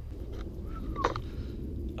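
Low, steady outdoor background rumble, with a faint short bird call about a second in.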